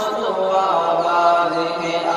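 Male voice singing an Urdu devotional tarana, drawing out long held notes that bend and slide in pitch.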